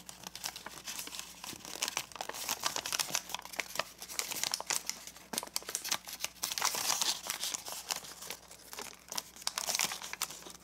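Sheet of origami paper crinkling and crackling as fingers crease and pinch it into zigzag pleats, a dense run of small crackles that is loudest a little past the middle.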